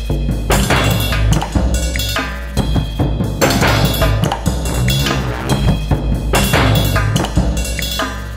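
Contemporary percussion music: dense, layered drum and percussion hits in a repeating pattern over a strong, continuous low bass.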